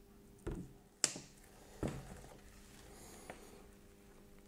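Handling of a plastic water bottle and 3D-printed PLA cups on a cutting mat: a few light knocks, with one sharper click about a second in and a faint tick past three seconds.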